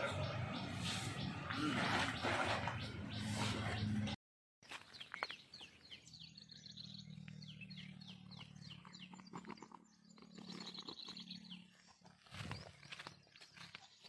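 A loud jumble of voices and room noise for about four seconds, cut off suddenly. After the cut, outdoors, a small bird chirps over and over in quick falling high notes above a low steady hum.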